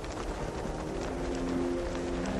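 Background music: held notes come in about a second in over a steady hiss, with a light clicking beat.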